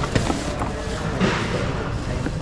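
Fabric backpack rustling and scraping as it is tugged out from a crowded pile of items, with small knocks and a louder rustle about a second and a half in, over a steady low rumble of background noise.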